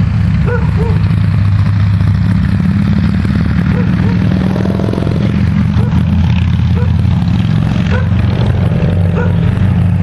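An emergency vehicle's engine idling with a steady low hum. A dog barks at intervals over it.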